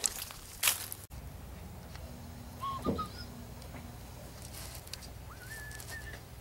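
Bird calls: two short whistled chirps in the middle, then a longer whistle that rises and holds near the end, over a steady low background hum. A short burst of noise comes about half a second in.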